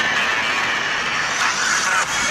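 City street traffic: a vehicle passing, a steady hum of engine and tyre noise with a faint tone that slowly shifts in pitch.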